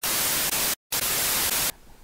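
Burst of white-noise static, a steady hiss across all pitches, broken by a short silent gap just under a second in and cutting off abruptly near the end; it is an edited TV-static transition effect between scenes.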